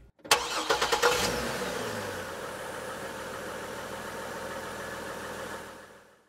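Engine-start sound effect on the logo ending: a quick run of sharp firing strokes, then a steady idle-like hum that fades away near the end.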